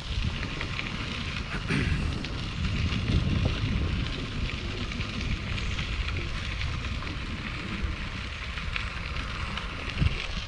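Bicycle tyres rolling over a gravel trail: a steady, gritty noise made of many small ticks, with wind rumbling on the microphone.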